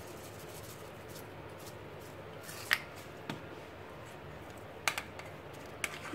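A few light clicks and taps over a quiet room background, the sharpest about halfway through, from a jar of chili flakes being handled and shaken over a small bowl of butter and garlic.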